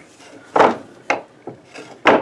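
A heavy rock scraping on a wooden desktop as it is set down and shifted: one loud scrape about half a second in, then two shorter, fainter ones.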